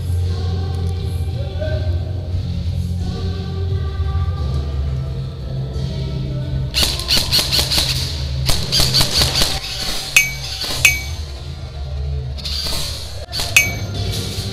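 Background music with a steady bass line, cut through by bursts of rapid sharp shots from an airsoft electric rifle (a VFC Avalon Leopard CQB) firing at about seven seconds and again near the end, with two sharp ringing pings in between.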